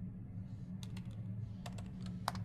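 A few computer keyboard key presses: two quiet clicks about a second in and a quick run of three near the end, over a steady low electrical hum.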